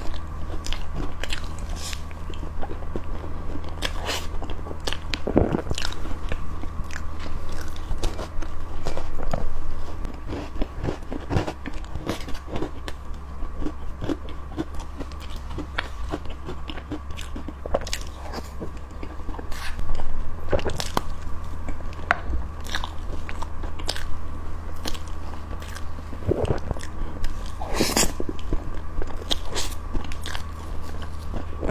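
Close-miked eating of a cream cake with cookie crumbs: soft, wet bites and chewing with many small clicks and the odd crunch, over a steady low hum.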